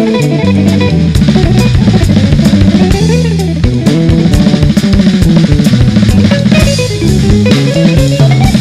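Live jazz guitar trio: an electric guitar plays quick lines over electric bass and a busy drum kit with frequent cymbal and drum hits. About three seconds in, a guitar run climbs and falls back down.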